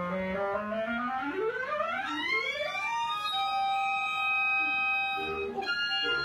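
Several clarinets play a rising glissando together, their lines sweeping upward at slightly staggered times, and land on a long held chord. New short notes start near the end.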